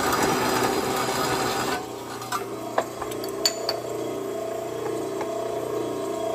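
Circular cold saw cutting through 3/8 by 1-1/2 inch flat bar. The loud grinding of the cut stops about two seconds in, leaving the saw motor humming steadily, with a few light metallic clicks and clinks as the cut piece is handled.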